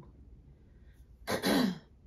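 A woman clearing her throat once, a short loud rasp about a second and a half in.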